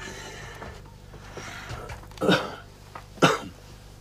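A man with asthma coughing twice, about a second apart, in the second half.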